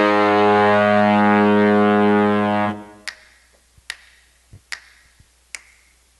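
A band's loud held brass chord that cuts off about three seconds in, followed by four finger snaps keeping a slow, steady beat about 0.8 seconds apart, the count-in to a 1960s pop song.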